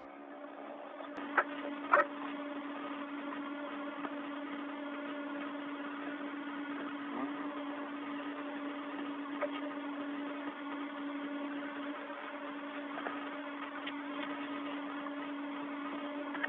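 Steady hum and hiss of an open space-to-ground radio channel, with a low droning tone held throughout. Two sharp clicks come about a second and a half and two seconds in.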